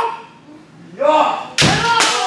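Kendo kiai shouts, then one sharp, loud strike about one and a half seconds in: a bamboo shinai landing on armour together with a stamping foot on the wooden floor, with a drawn-out shout carrying on after it.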